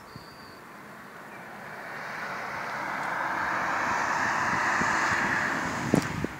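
A vehicle passing by: a swell of road noise that builds over a few seconds, is loudest about four to five seconds in, then eases off.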